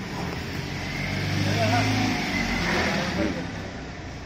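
A motor running with a low hum, swelling louder through the middle and fading again toward the end.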